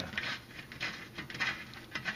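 A loose screw being pulled by hand out of a mini-split air handler's metal wall-mounting plate, a few short scrapes and clicks of metal on metal: the screw was set without a wall anchor, so it comes straight out.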